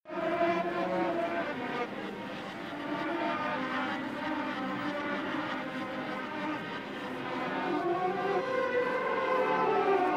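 Steady underground station ambience with a train running, starting suddenly out of silence.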